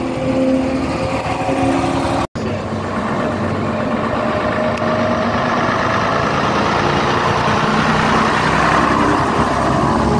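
A double-decker bus's diesel engine idling with a steady tone, cut off suddenly a little over two seconds in. Then a half-cab London Transport double-decker's diesel engine pulls up and drives past close by, growing louder towards the end.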